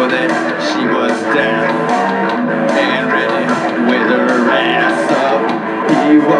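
Electric guitar strumming chords in a steady rhythm, part of a live rock song between sung lines.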